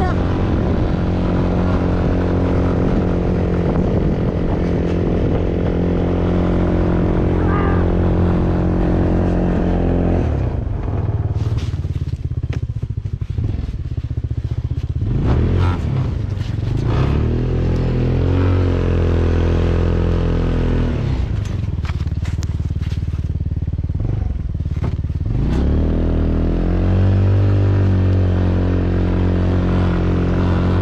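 Polaris Hammerhead GTS 150 go-kart's 150cc single-cylinder four-stroke engine running under way in snow. It holds a steady pitch, dies down twice as the throttle eases and then climbs back as it accelerates again. Scattered short knocks come while it runs slower.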